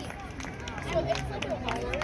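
Distant, overlapping voices of football players and onlookers across an open field: scattered calls and chatter, none standing out, with a few short sharp clicks.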